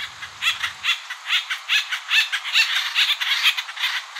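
Acorn woodpecker giving a quick series of short, funny squeaky calls, starting about half a second in.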